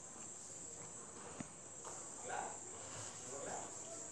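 Faint night-time cricket ambience: a steady high-pitched chirring. A couple of faint, indistinct sounds come in the second half.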